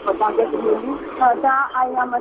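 A person talking over a telephone line: continuous speech that sounds thin and narrow, with no deep bass or crisp highs.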